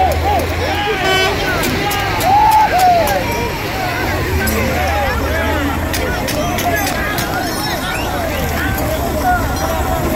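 A crowd of many people shouting and talking over one another, with no single voice clear. A low steady rumble sits beneath the voices for the first second and again for a few seconds around the middle.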